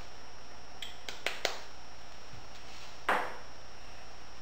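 A few light clicks of kitchen utensils being handled at the counter, a quick cluster about a second in, then a short brushing swish near the end.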